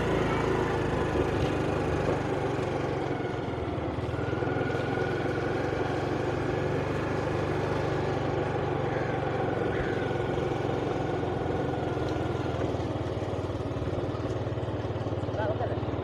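Motorcycle engine running at a steady speed while riding along a dirt lane.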